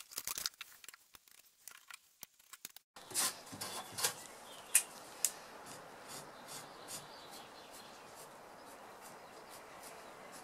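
Marker pen scratching and rubbing along a weathered wooden bilge stringer, with a few sharp scratchy strokes between about three and five seconds in and fainter ones after, over a steady faint hiss. Before that, scattered light clicks and knocks.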